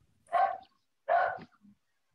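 A dog barking twice, two short barks just under a second apart, heard through an online call's gated audio.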